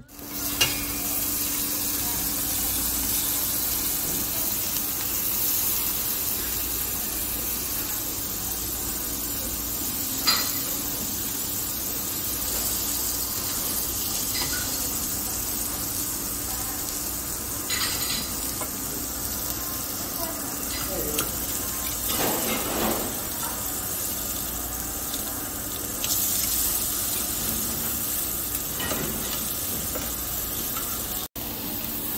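Thick slabs of pork sizzling steadily on a tabletop Korean barbecue grill. A few sharp metal clicks stand out as tongs and scissors turn and cut the meat on the grill plate.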